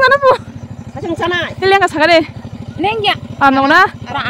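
A vehicle engine idling with a steady low pulse, under women's voices talking in short bursts.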